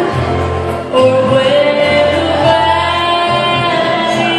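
A woman sings into a microphone over live electric keyboard accompaniment. She holds long sung notes over a low bass line.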